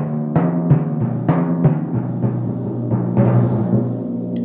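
Timpani played with mallets: a run of single strokes, about three a second, moving between drums of different pitch, with the low heads ringing on under each new stroke.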